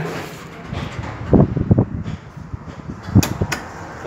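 Knocks and thumps of a car door and its interior being handled, then two sharp clicks near the end.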